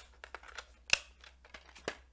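Handling noise from a metal steelbook Blu-ray case: a string of light clicks and taps, with one sharper click about a second in.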